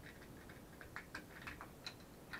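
Faint, irregular small clicks, a few a second, from the threaded plastic knob of a vacuum suction-cup hook being turned on a tiled wall, screwing the cup down to draw its vacuum.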